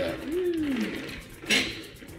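Plastic Transformers Cyberverse Rack'n'Ruin toy armored car rolled by hand across a wooden tabletop, its small plastic wheels turning freely. A short hum rises then falls in pitch in the first second, and a brief sharp rustle or knock comes about one and a half seconds in.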